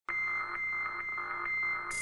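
Synthesizer intro of an electronic techno-pop song: a steady high electronic tone over a soft pulse about four times a second. A hiss like a cymbal comes in at the very end.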